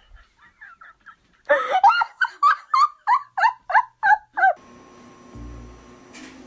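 A person laughing hard in a quick run of about ten high-pitched bursts, about three a second, after a few softer ones. The laughter cuts off abruptly and gives way to a steady low hum.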